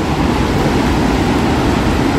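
Steady rush of a large waterfall, Wapta Falls on the Kicking Horse River, as a constant loud noise.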